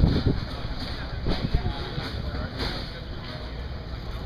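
Indistinct voices over a steady low rumble of background noise.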